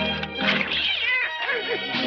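A cartoon cat crying in meowing cries that bend and fall in pitch, over background music.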